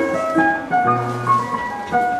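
Digital piano playing a melody of separate notes over low sustained bass notes.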